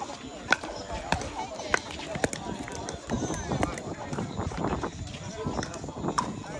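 Pickleball paddles hitting a hard plastic ball in a fast exchange: four sharp pops about half a second apart in the first couple of seconds, then the rally stops. Voices chatter underneath.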